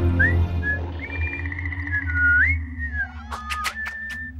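A carefree whistled tune with sliding, scooping notes over a low sustained music bed, with a few quick sharp clicks near the end.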